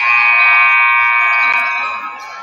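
Basketball scoreboard horn sounding one loud, steady blare for about two seconds, starting suddenly and fading near the end. It marks a stoppage in play.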